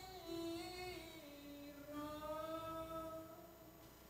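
A solo voice singing slow, drawn-out notes of a chant-like melody, gliding gently between pitches; the last note fades out shortly before the end.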